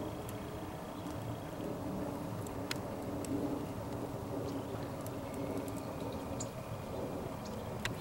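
Oak fire burning inside an Anevay Frontier Plus steel wood stove with its glass door closed: a low, steady rushing with a few sharp crackles, the clearest a little under three seconds in.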